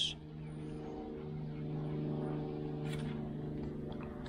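An engine droning steadily at an even pitch, growing a little louder about a second in. A short click comes near the end.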